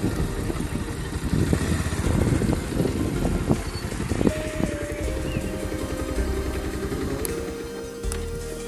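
Motorcycle riding noise with rough wind rumble on the microphone. About four seconds in, background music with long held notes comes in.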